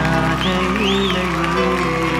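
Background music made of sustained held tones, with a few short gliding notes rising and falling in the middle.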